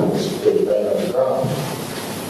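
A man speaking, his words unclear, trailing off about halfway into a steady hiss of room noise.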